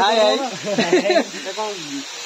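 A man talking, his voice rising and falling, over a steady hiss of rushing water.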